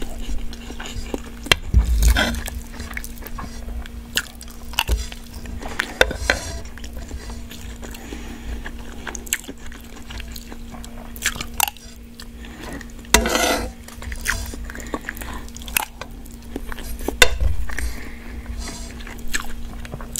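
Close-miked chewing and biting of fried ramen noodles with egg, with irregular clicks and a few louder bursts of mouth sound, and the metal spoon clinking and scraping against the nonstick pan. A steady low hum runs underneath.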